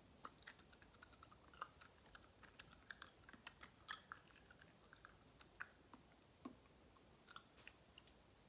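Faint, irregular clicks and soft crunches of a person chewing a mouthful of cereal with milk.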